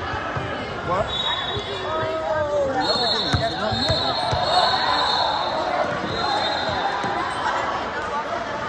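A basketball being dribbled on a gym's hard floor, a few sharp bounces echoing in a large hall, under players' and spectators' voices. A thin steady high tone sounds on and off through it.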